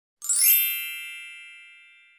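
A bright synthetic chime, a logo-sting sound effect: a quick rising shimmer about a quarter second in, then several ringing tones that fade away slowly.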